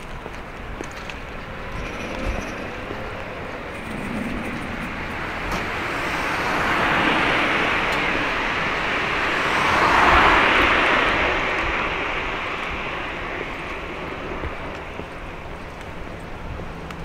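Cars passing close by on a street: tyre and engine noise swells up, is loudest about ten seconds in, then fades away.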